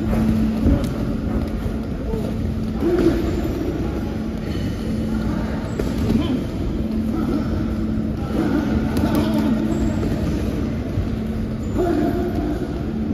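Boxing sparring heard in a large echoing hall: a steady low rumble and hum throughout, with a few dull thuds of gloves and footwork on the ring canvas and faint voices.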